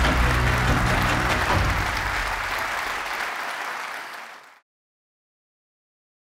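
Audience applauding over low, held outro music. The music fades after about a second and a half, the applause tails off, and the sound cuts off suddenly about four and a half seconds in.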